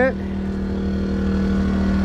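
Small portable generator running steadily, with a constant hum, while powering the travel trailer through its shore-power cord.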